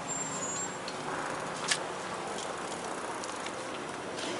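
Steady hum of distant road traffic, with one sharp click a little under two seconds in.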